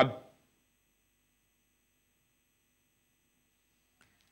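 A word cut off abruptly just after the start, then near silence as the remote guest's video-call audio drops out with a poor connection.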